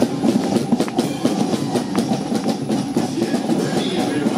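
Marching percussion going past: a quick, irregular run of drum and cymbal hits over a dense din of music.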